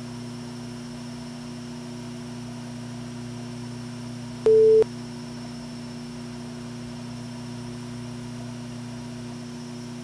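A steady low electrical hum with one short, loud, pure beep tone about halfway through.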